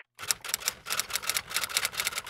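Typewriter typing sound effect: a quick, even run of key clacks, about seven a second, as a title is typed out on screen.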